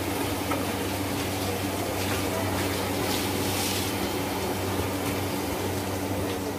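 Steady low machine hum with an even hiss over it, the constant background noise of a working kitchen, with a few faint clicks.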